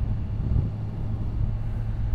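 Kawasaki Ninja 1000SX inline-four engine running steadily while cruising at about 55 km/h, a low even hum mixed with wind rush heard from the rider's position.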